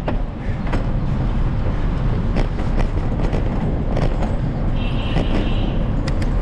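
Wind and road noise on the camera microphone of a moving bicycle, with scattered clicks and rattles from the bike going over rough pavement. A brief high whine about five seconds in.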